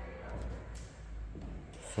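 Handling noise from a handheld camera being carried while walking: a low rumble that fades in the first second, faint rubbing, and a couple of light knocks.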